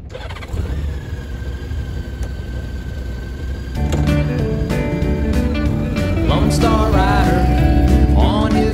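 A low engine rumble, like a Honda Gold Wing's flat-six starting and idling, with intro music coming in about four seconds in and a singing voice joining near the end.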